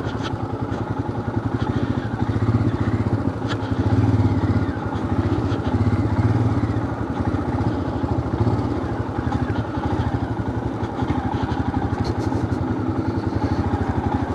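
Motorcycle engine running steadily at low speed while the bike rolls slowly along, its exhaust beat heard as a fast, even low throb.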